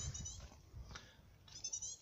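Blue tit calling: a run of quick, high, thin notes at the start and another near the end. It is a call its listener has never heard from a blue tit, and he takes the bird to be anxious about a nest close by.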